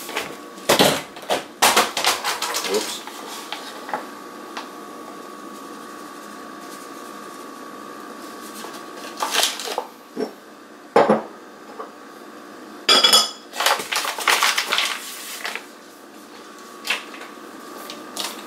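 Kitchen handling sounds as flour is measured out by eye into a container: scattered clinks and knocks of a container and utensils, with short bursts of rustling, clustered near the start, about halfway through and near the end, and a quieter stretch in between.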